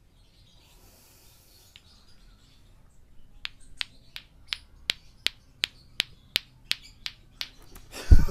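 Lato-lato clackers: two hard plastic balls on a string knocking together in a steady rhythm of sharp clacks, about three a second, starting a few seconds in.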